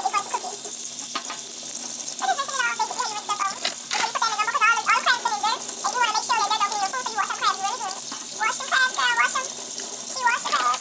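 Tap water running steadily into a stainless steel sink, splashing over crab pieces being rinsed by hand. From about two seconds in, high wavering voice-like sounds come in over the water.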